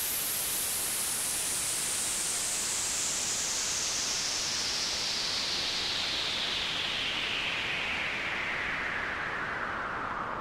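Synthesized white-noise sweep closing an electronic remix: a steady hiss whose bright band falls slowly in pitch throughout, easing off slightly near the end.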